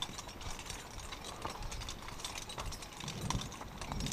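Zipline trolley rolling along the steel cable, with irregular clicking and rattling over a noisy rush.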